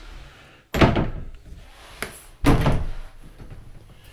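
Two door thuds about a second and a half apart, each sharp and ringing on briefly.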